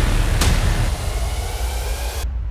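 A steady low rumble, with one sharp click about half a second in.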